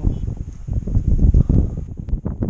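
Wind buffeting the camera's microphone: an uneven low rumble that rises and falls in gusts.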